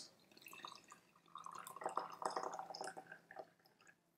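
Hot water being poured from a kettle into a small ceramic kyusu teapot over loose sencha leaves: a faint, splashing trickle that grows a little about a second in and stops shortly before the end.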